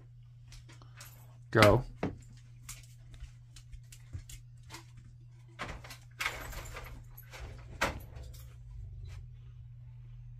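A person's short "oh" about one and a half seconds in, the loudest sound. Around it, scattered light clicks of a dog's claws on a hardwood floor as it walks, and a rustle about six seconds in as the dog brushes past the leaves of a large houseplant.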